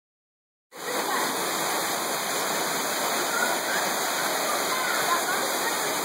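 Steady rush of a small waterfall spilling onto rocks and shallow water. It comes in abruptly less than a second in.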